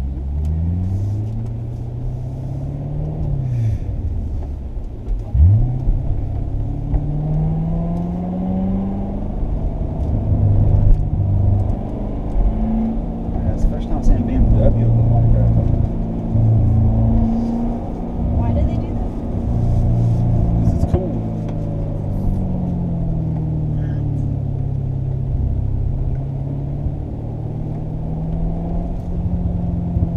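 Corvette Stingray's LT1 V8 heard from inside the cabin, its revs climbing and dropping again and again as it pulls through the gears, with a steadier stretch in the middle.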